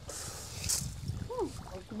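Outdoor background noise with a steady low rumble, a short high hiss about a third of the way in, and a faint voice murmuring "ừ" near the end.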